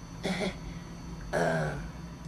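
A person clearing their throat twice in two short, awkward vocal sounds, the second one a little longer, about a second apart.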